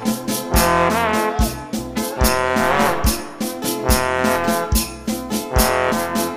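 Instrumental break of a band's recorded dance song: horns playing a wavering melody with vibrato over a steady, even drum beat.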